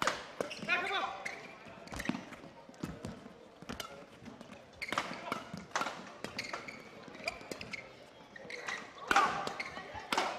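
Badminton rackets hitting a shuttlecock in a fast rally, sharp hits about once a second, with players' shoes squeaking on the court floor.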